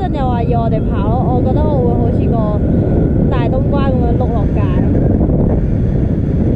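Wind from a paraglider's flight buffeting the camera microphone, a loud, steady low rumble. A voice calls out over it several times in the first five seconds.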